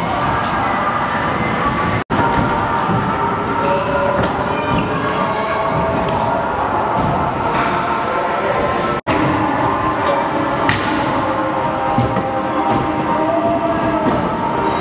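Stunt scooter wheels rolling on a concrete skatepark floor, with a few sharp thuds of decks landing, over a steady echoing hall din of chatter and background music. The sound cuts out for an instant twice, where clips are joined.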